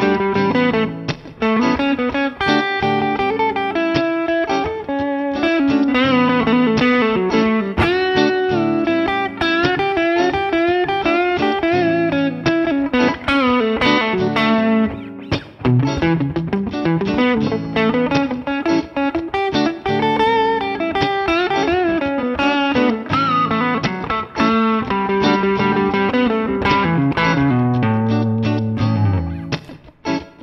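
Electric guitar with some effect on it playing a melodic run of single-note lines from the A major pentatonic scale with its F-sharp raised to a G, the flat seventh, which gives the lines a dominant sound. The playing breaks off briefly just before the end.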